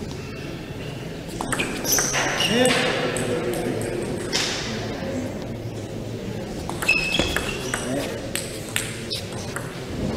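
A table tennis ball clicking off rubber bats and the table in a rally, sharp irregular strokes about a second or so apart.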